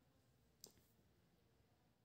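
Near silence: room tone, with a single faint click about two-thirds of a second in.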